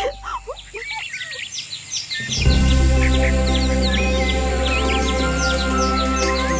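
Birds chirping in quick, high, sweeping calls. About two and a half seconds in, loud sustained music chords with a deep bass come in under the chirps, which carry on.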